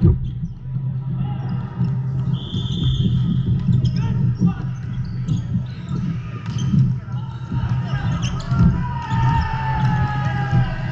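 Volleyballs bouncing and being struck on hardwood courts in a large, echoing sports hall, scattered irregular thumps mixed with players' voices and calls. A steady low hum runs underneath, and a brief high tone sounds about two and a half seconds in.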